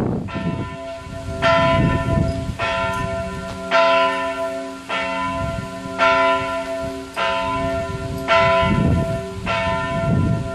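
Two church bells tuned to D and F, the middle bells of Strängnäs Cathedral, swinging and striking in alternation, a little under one strike a second, each note ringing on into the next. This is helgmålsringning, the Saturday-evening ringing that marks the start of Sunday.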